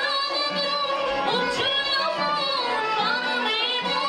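A woman singing an Assyrian folk song into a microphone, a continuous melody of long held notes with wavering ornamented turns.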